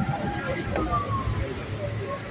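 Street traffic with a pickup truck's engine running as it passes close by, over a steady low rumble of road noise.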